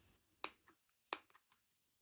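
Small sewing scissors snipping twice at knit fabric beside a freshly sewn buttonhole: two short, sharp snips about two-thirds of a second apart, with a couple of fainter ticks.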